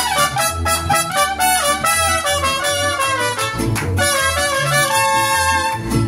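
Mariachi band playing an instrumental passage: trumpets carry a stepping melody over a regular low bass pulse, settling into a held note near the end.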